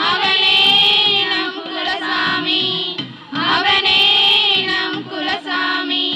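A group of women singing a Tamil folk song together in unison, in phrases with short breaks between them.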